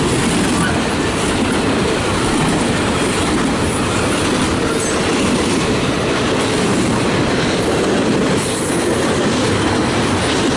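Double-stack intermodal freight train rolling past at close range: loud, steady noise of steel well-car wheels running over the rails.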